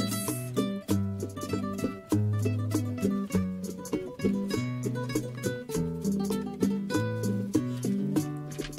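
Requinto and acoustic guitar playing together live, a flowing run of bright plucked notes on the requinto over held bass notes on the guitar.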